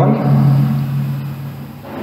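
A man's voice holding one long, steady vowel, the drawn-out end of a word or a hesitation hum, that fades away over about a second and a half.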